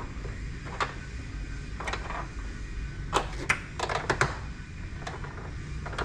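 Irregular light clicks and knocks of hand tools being handled, one at a time or in quick clusters of two to four, with short gaps between.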